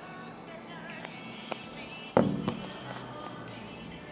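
Music playing in the background, with a sharp knock about two seconds in and a smaller one just after: a phone set down on a tabletop.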